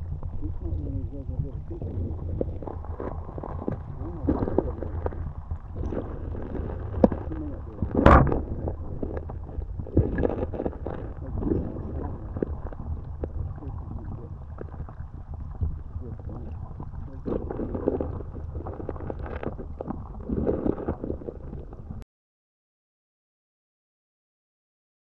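River current heard muffled through a submerged action camera's waterproof housing: a steady low rumble with gurgling swells. A sharp knock comes about eight seconds in, and the sound cuts off suddenly two seconds before the end.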